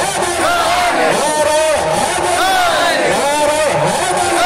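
Male naat reciter chanting a short rising-and-falling phrase over and over into a microphone through a public-address system, about once a second.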